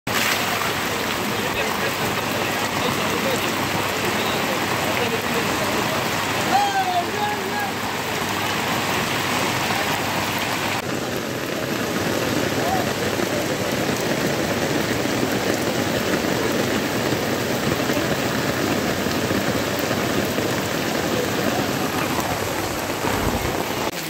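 Heavy rain pouring down on a street: a dense, steady hiss of downpour hitting pavement and surfaces.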